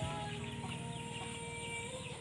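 Chickens clucking in a farmyard, with drawn-out hen calls.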